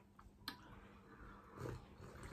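Faint sipping of hot cappuccino from china mugs, with a light click about half a second in and a soft low sound near the end.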